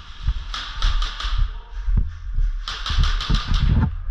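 Airsoft guns firing: a few quick shots about half a second in, then a rapid full-auto burst of evenly spaced cracks near the end, with low thuds underneath.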